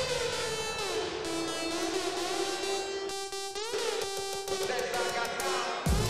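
Electronic music: sustained synthesizer tones sliding up and down in pitch, with almost no bass. A heavy pulsing bass beat comes in right at the end.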